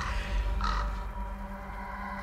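Two short raven caws in quick succession in the first second, over a low, dark trailer-music drone.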